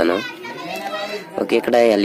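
Speech: a high-pitched voice talking, with a short lull in the first half.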